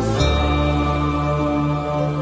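Background music of slow devotional chanting, with long held notes; a new note begins just after the start.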